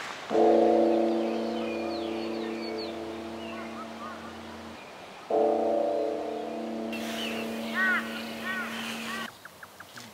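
A large Buddhist temple bell struck twice about five seconds apart, each stroke a long, deep, humming ring that slowly fades. Small birds chirp between the strokes and near the end.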